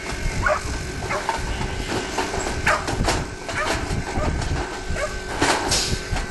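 Sheep bleating in short calls, mixed with metallic clanks and rattles from the steel sheep-handling crate and gates.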